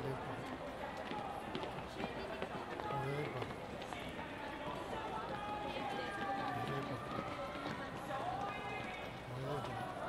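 Crowd of people talking over one another, with the footsteps of people walking through a busy pedestrian plaza.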